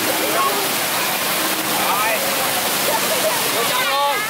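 Small ground-level fountain jets spraying up and splashing back onto wet pavement, a steady rush of water. Children's and crowd voices chatter over it.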